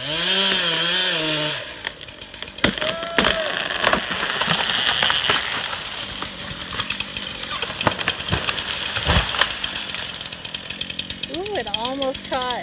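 Chainsaw running steadily while cutting brush, with many sharp snaps and cracks over it.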